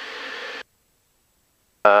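Intercom audio from the pilot's headset: a faint steady hum of cabin noise for about half a second, then cut off abruptly to dead silence as the intercom's voice squelch closes, until a voice says "uh" at the very end.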